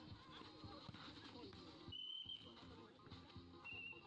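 Two short steady blasts of a referee's whistle, one about two seconds in and a shorter one near the end, over faint crowd voices.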